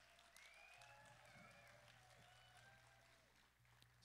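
Faint audience applause, a scatter of claps with a few distant voices, tapering off toward the end.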